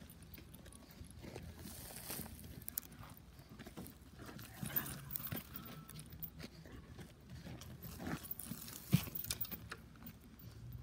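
A Doberman digging in dry, loose dirt with her front paws: irregular scraping and scratching of soil, with a few sharper scuffs spread through it.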